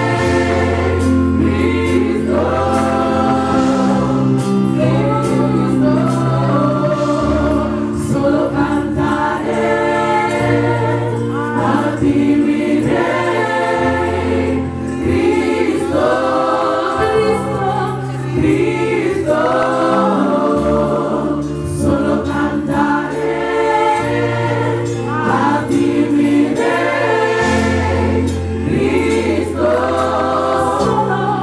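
Gospel worship song sung by a female lead vocalist with a small women's backing choir, over an instrumental accompaniment with held bass notes that change every couple of seconds.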